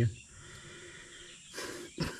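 The end of a man's sentence, then a quiet pause, then a short breath in through the mouth just before he speaks again.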